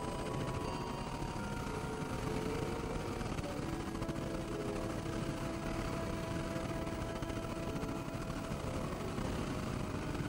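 Experimental synthesizer noise music: a dense, steady noise bed heavy in the low end, with several held drone tones layered over it. A new pair of tones comes in about three and a half seconds in.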